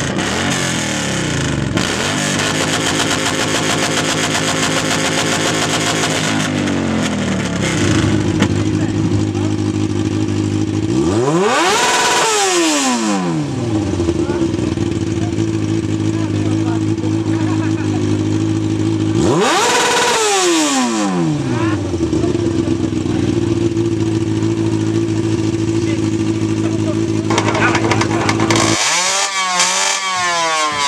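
Motorcycle engines run one after another. A sport bike idles steadily and is sharply revved twice, each rev rising and falling back to idle, at about twelve and twenty seconds in. Near the end another bike, a supermoto, starts revving.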